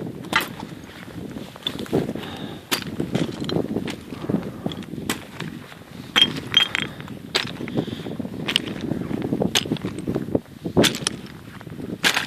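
Footsteps on loose shale scree: flat stone plates shift and clink sharply against each other underfoot, in an irregular series of clicks with a low rustling noise beneath.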